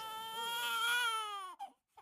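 Newborn baby crying: one long wail that rises a little and then falls away, ending about a second and a half in.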